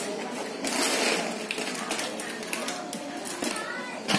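Indistinct background voices of people talking, not in the foreground, with a few light clicks.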